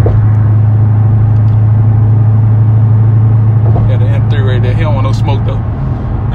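Car's engine and exhaust droning steadily in the cabin while cruising at highway speed, a loud low hum that holds one pitch throughout.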